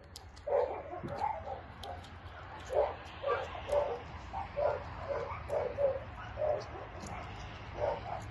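A series of short animal calls repeated irregularly, about one or two a second.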